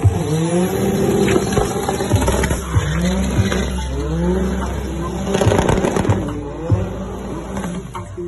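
Drift car's engine revving hard, its pitch rising and falling over and over, with tyres squealing in a smoky burnout and a few sharp cracks.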